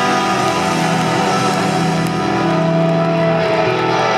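Live rock band with electric guitars playing loud, long held notes over a sustained chord.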